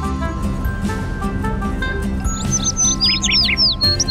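Background music playing, with a small bird chirping a rapid run of quick, mostly falling high notes from about halfway through.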